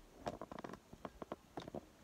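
Fly-tying vise being handled and turned, giving a quick run of small clicks and taps for about a second and a half.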